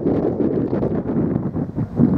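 Wind buffeting the microphone: an uneven low rumble that rises and dips.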